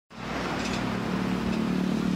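Street traffic: a motor vehicle engine running steadily with road noise.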